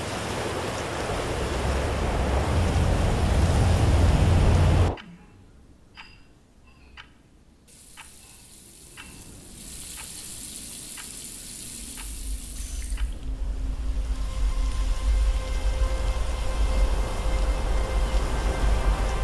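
Shallow stream running, with wind rumbling on the microphone, cut off abruptly about five seconds in. Then quiet kitchen sounds: a few light clicks from handling a metal kettle, and a faucet hissing briefly. Near the end, wind buffets the microphone again.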